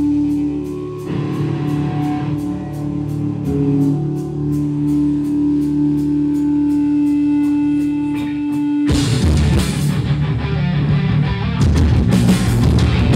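Live rock band: a held guitar note rings steadily over a quiet ticking beat, about three ticks a second. About nine seconds in, the full band comes in loud with heavy guitars and drums.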